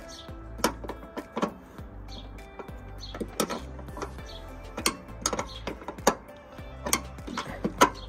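Background music playing, with irregular sharp clicks from a ratchet wrench being worked back and forth on the fuel door latch bolt.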